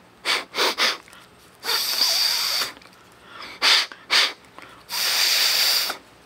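A person breathing hard through one nostril with the other pressed shut: three quick sniffs, a long forceful nose breath, two more quick sniffs, then another long forceful breath.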